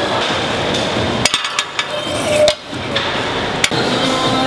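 Gym ambience with several sharp metal clanks of weights and barbell hardware: a cluster about a second in and one more near the end.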